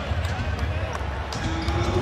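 Basketball arena sound: a steady low crowd rumble with a few short, sharp knocks from the court.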